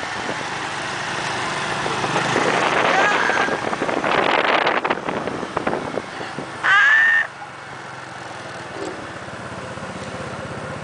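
Motor scooters riding past at close range, their small engines heard as a steady noise. There is one short, loud, high-pitched note about seven seconds in.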